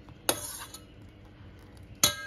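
A steel spoon clinks once against a stainless-steel pot, a brief metallic knock. A louder, ringing clink follows right at the end.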